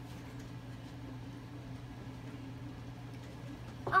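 Steady low hum under quiet room tone, with no distinct event.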